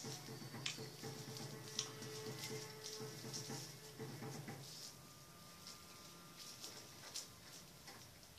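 Faint soft background music with low held notes, a higher note coming in about halfway. A few light clicks and rustles of rolling paper as a cigarette is rolled by hand.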